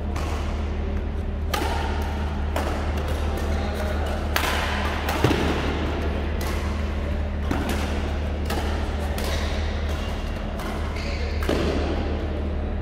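Badminton rally: rackets striking the shuttlecock about once every second or so, the sharpest hit about halfway through, over a steady low hum.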